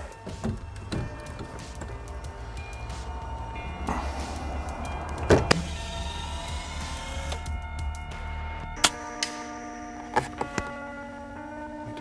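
Background music over a low steady hum, with a few sharp cracks of a shrouded PCP air rifle being fired and pellets striking a steel spinning target while the rifle's zero is checked; from about nine seconds in the music carries held chords.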